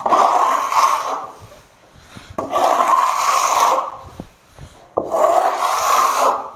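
A Swiss steel smoothing trowel drawn across wet gypsum plaster on a wall, scraping in three long strokes about two and a half seconds apart.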